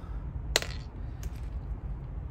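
Fingers digging through a melon's seeds and flesh, with one sharp click about half a second in and a few faint ticks after, over a low steady background rumble.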